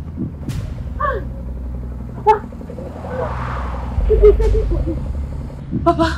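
A motor vehicle passing: a steady low engine rumble, with a rush of noise that swells and fades around the middle and a heavier rumble just after. A few short voice sounds come in between.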